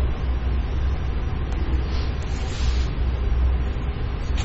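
Steady low hum with a soft, even hiss: background noise of the room, with no speech.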